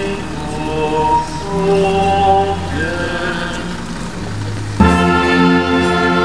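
Slow hymn singing in held notes, then about five seconds in a brass band strikes up suddenly and loudly with full sustained chords.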